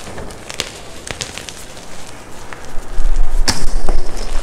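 Hands crushing and squeezing plain white gym chalk mixed with baby powder: soft crumbling with scattered sharp crunches, the loudest about three and a half seconds in. From about three seconds a low rumble joins and the sound gets much louder.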